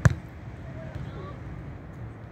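A beach volleyball struck once by a player, a single sharp hit right at the start, followed by faint open-air background with a low steady hum.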